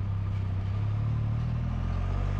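Can-Am Spyder F3-S three-wheeler's Rotax 1330 ACE three-cylinder engine running steadily at low road speed, a low even drone.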